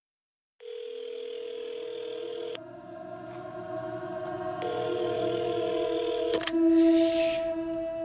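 Telephone ringing tone heard through a handset as an outgoing call rings: a steady buzz-tone twice, each about two seconds long with a two-second gap. Under it a low film-score drone swells, and a soft click comes as the second ring ends.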